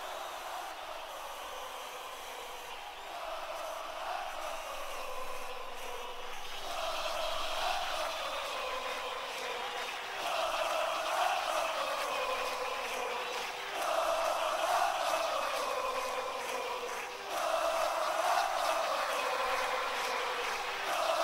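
Football stadium crowd chanting in unison. The same chanted phrase repeats about every three and a half seconds over the crowd's noise, growing louder as it goes.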